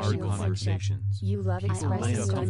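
Several overlapping voices reciting affirmations, layered over a steady low tone that pulses about four times a second; the voices break off briefly about a second in.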